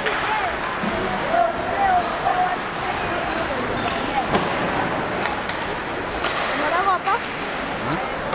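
Ice hockey rink ambience during play: a steady wash of arena noise with occasional sharp knocks of sticks, puck or boards, and spectators' voices calling out now and then, around the first couple of seconds and again near the end.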